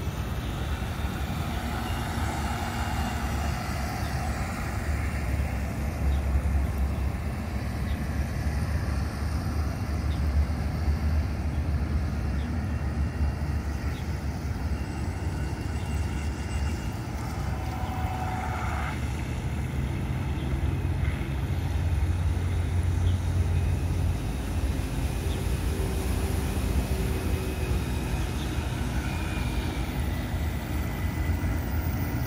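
Radio-controlled model boat running across a pond, its motor a faint high whine, heard most near the start and the end, over a steady low rumble.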